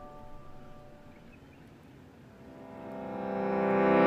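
Background music: sustained instrumental chords fade away over the first two seconds, and another piece of music swells in over the last two.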